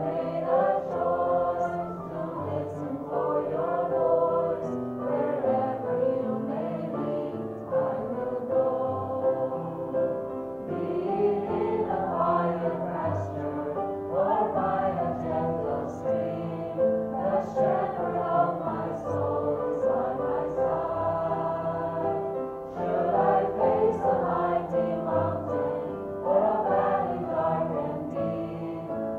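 A small group of women singing a worship song together in unison, with sustained low accompaniment notes underneath, running continuously.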